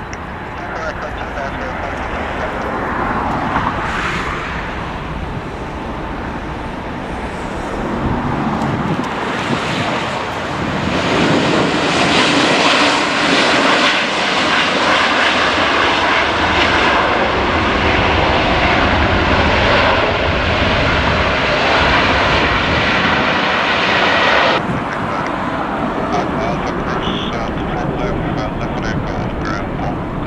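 Boeing 777's twin turbofan engines at takeoff power during the takeoff roll: loud jet noise that grows through the first ten seconds and is loudest from about twelve seconds in. Near 25 seconds its hiss cuts off suddenly, leaving a lower, duller sound of the jet climbing away.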